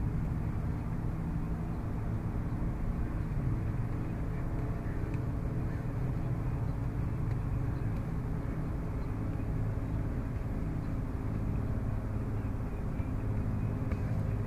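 Steady low outdoor background rumble, even in level and with no distinct knocks or calls standing out.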